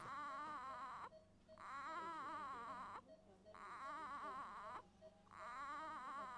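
A small preterm newborn crying faintly in four short, quavering bouts, each about a second long, with brief pauses for breath between them.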